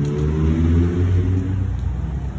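A car engine accelerating nearby: a low rumble whose pitch rises over the first second and a half, then fades back.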